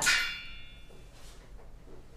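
A single sharp clink at the start, followed by a bright ringing tone that fades away over about a second.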